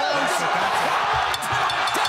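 Arena crowd roaring at a kickboxing knockout, with excited voices shouting over the noise.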